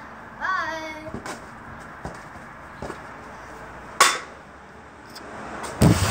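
Handling noise from a phone camera: loud thumps and rubbing near the end as the phone is picked up, after a single sharp knock about four seconds in. A brief high voice is heard near the start.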